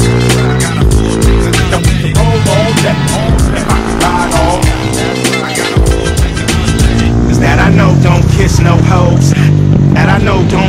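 Hip-hop music with a steady beat, over which a KTM 450 SMR supermoto's single-cylinder four-stroke engine revs up and down in repeated sweeps.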